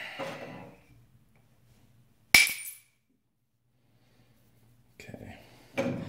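A copper bopper strikes the edge of a Flint Ridge flint preform once, a sharp ringing click as a flake comes off. Softer scraping and a small click of the stone being handled follow near the end.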